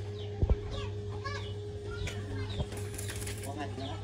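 Steady electrical hum of an arc welding machine between welds, with two sharp knocks about half a second in. Birds chirp and chickens cluck throughout.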